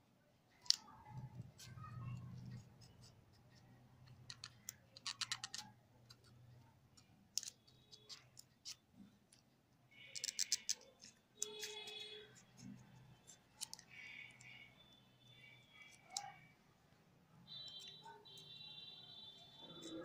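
Knife tip scoring the tough rind of a pomegranate: a run of short scratches and sharp clicks as the blade cuts and the fruit is turned in the hands.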